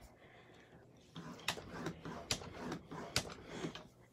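Paper trimmer's scoring blade drawn along its track over cardstock, a few faint scraping strokes back and forth starting about a second in, scoring a fold line.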